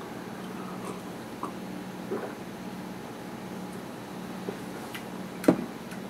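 Quiet room tone with a steady low hum while a man sips beer from a glass, with a few faint small sounds of drinking and one short sharp click near the end.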